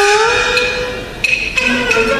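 Yue opera accompaniment starting up: a sharp wood-block clap, then a single held note, and about one and a half seconds in the ensemble of strings and clicking percussion enters.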